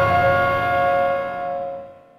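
The tail of a Windows startup chime: several held bell-like tones ring out, decaying steadily and fading away near the end.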